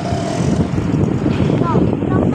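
Steady low rush of a vehicle moving along a street, with a voice calling out briefly near the end.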